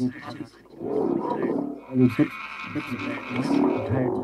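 Electroacoustic tape music: layered, electronically transformed voice sounds with no clear words, in dense shifting swells.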